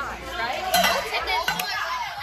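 Teenage girls talking and exclaiming over one another: lively overlapping chatter.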